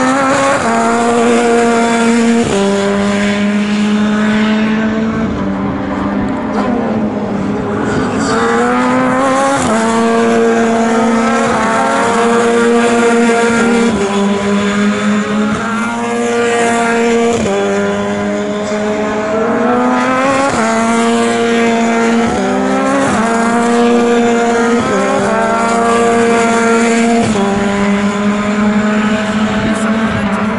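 A BRDC British Formula 3 single-seater's engine at racing speed. The note climbs steeply and drops sharply at each gear change, over and over, with stretches held at a steady pitch between.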